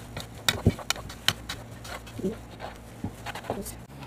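Gloved hands mixing crumbled bread and sugar in a bowl: plastic gloves crinkling and rustling, with scattered crisp clicks and a few short squeaks.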